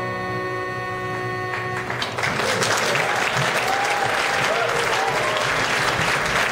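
Uilleann pipes with acoustic guitar holding a final chord that stops about two seconds in, followed by an audience applauding.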